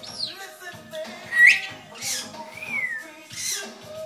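African grey parrot giving several sharp sliding whistles over a song playing in the background: mostly falling whistles, with the loudest a quick rising whistle about a second and a half in.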